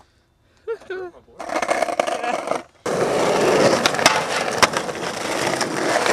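Skateboard wheels rolling on asphalt, getting louder about three seconds in, with a few sharp clicks.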